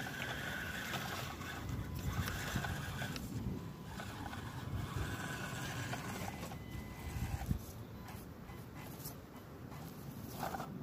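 Electric motor and gear drivetrain of a Panda Hobby Tetra K1 RC crawler whining in three short bursts in the first six seconds as the throttle is applied and let off, with rough low rumbling from the truck working over the dirt.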